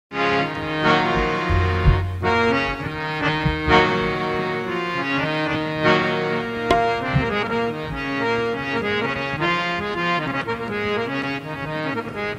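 Harmonium playing the instrumental opening of a qawwali: a reedy melody over sustained chords, with hand-drum strokes now and then.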